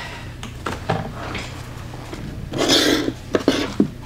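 Nail supplies being handled on a towel-covered work table: scattered light clicks and knocks, a short rustle about two and a half seconds in, then a quick run of sharp clicks, over a faint steady low hum.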